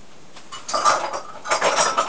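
Hard plastic cupping cups clinking and clattering against one another as they are handled, in two bursts, the second near the end.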